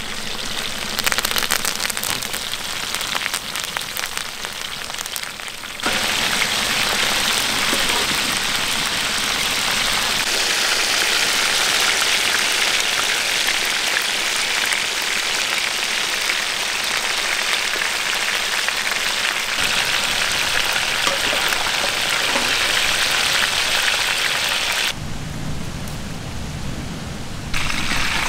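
Hot oil sizzling under a whole black pomfret frying in a large pan, with sharp crackles as fresh curry leaves go into the oil. The sizzle grows louder about six seconds in, holds steady, and drops away near the end.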